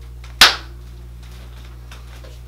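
A single sharp smack of hands about half a second in, dying away quickly, over a steady low hum.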